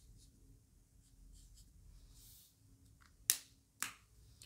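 A whiteboard marker writing on a whiteboard: faint, soft scratches of the tip on the board. Near the end come two sharp clicks about half a second apart.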